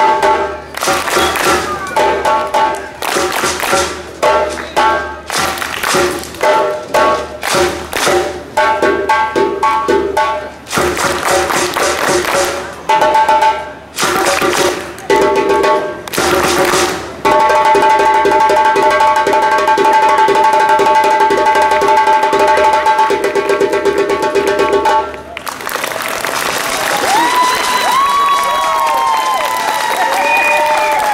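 Percussion-driven music: repeated hand-drum strikes over sustained backing notes, building to a long held chord that cuts off sharply about 25 seconds in. The crowd then cheers and whistles.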